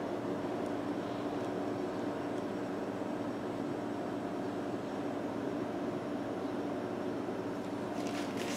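Steady background hum of room noise, holding a few constant low tones, with nothing else standing out.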